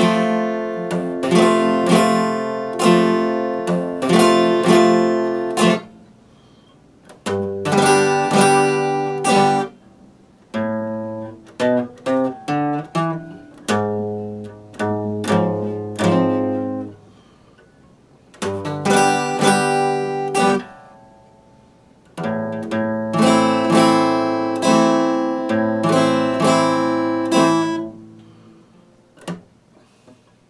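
Epiphone acoustic guitar played in short strummed phrases broken by brief pauses, with a stretch of single picked notes around the middle. The playing stops near the end with one last plucked note.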